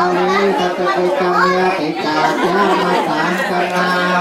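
Buddhist Pali chanting by a group of voices held on one steady monotone pitch, with other higher voices talking or calling over it in a large hall.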